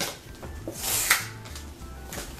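A cardboard shipping box being handled and opened: a short knock, then a loud scraping rub about a second in.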